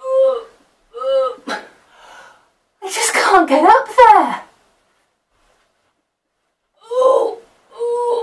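A woman's short, high-pitched effort grunts about once a second as she strains and jumps to reach up, then a longer, louder straining cry that slides up and down in pitch. After a pause, two more grunts come near the end.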